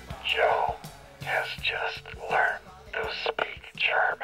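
Whispered voice speaking in short phrases over quiet musical backing.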